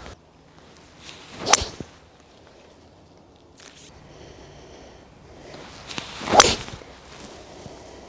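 Two golf shots about five seconds apart, each a short swish of the club coming down, ending in the sharp strike of the clubhead on the ball.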